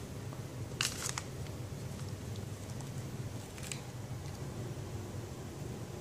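Quiet room tone with a steady low hum, broken by a few brief, soft handling noises on a countertop: two about a second in and one near four seconds.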